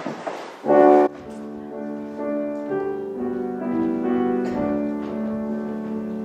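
Piano accompaniment beginning a slow song introduction: a loud opening chord about a second in, then sustained chords and gently moving notes.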